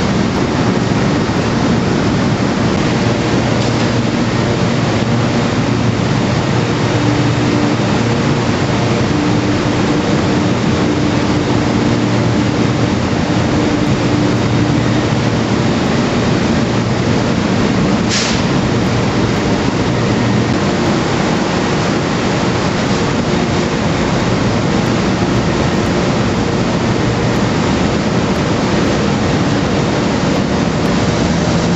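Machinery inside the deck house of the Silver Spade, a Bucyrus-Erie 1950-B electric stripping shovel, running with a loud, steady din and a low hum while the deck swings. One brief click comes partway through.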